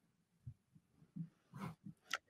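Near silence with a few faint, brief low sounds scattered through it.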